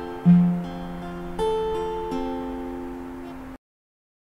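Acoustic guitar with a capo, picking an A–D chord pattern one string at a time, with a low bass note followed by higher notes that ring on. The sound cuts off suddenly about three and a half seconds in.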